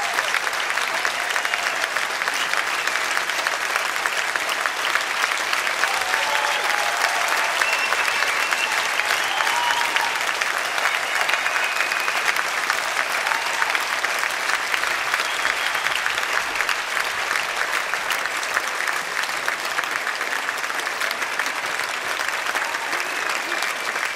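Large theatre audience applauding: dense, steady clapping that eases slightly near the end.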